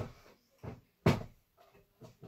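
A few short knocks and thumps, the loudest a little past a second in, like a door or cupboard being handled.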